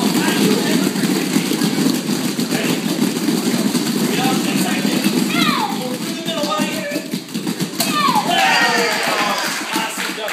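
Drum roll of many children's hands slapping rapidly on a padded mat floor, with children's voices cheering and squealing over it around the middle and again near the end.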